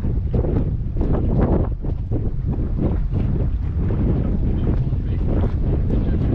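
Wind buffeting the microphone: a steady low rumble with uneven gusts.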